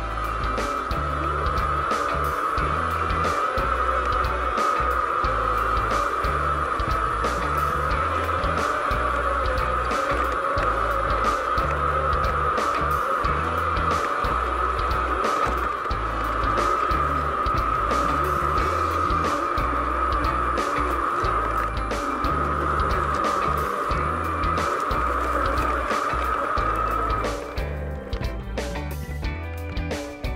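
Background music with a repeating bass line, over a steady high whine from the electric all-terrain board's four-wheel-drive motors under load on a steep climb; the whine cuts off near the end as the board stops.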